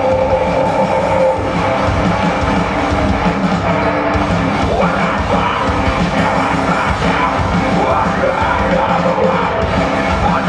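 A hard rock band playing live at full volume: electric guitars, bass and drums, with the singer's voice over them, heard from the audience.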